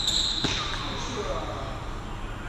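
Badminton court shoes squealing briefly on the sports-hall floor as the players move, followed by a sharp crack of a racket striking the shuttlecock about half a second in.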